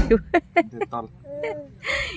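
A person's voice making several quick, short breathy sounds, then a brief wavering pitched sound about a second and a half in.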